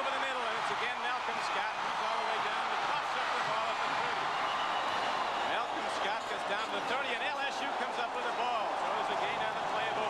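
Stadium crowd noise at a college football game: a steady mass of many voices from a large crowd, with no single voice standing out.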